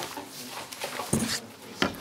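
Short handling noises close to a table microphone: a sip through a straw from a plastic cup, then the cup set down with a light knock near the end.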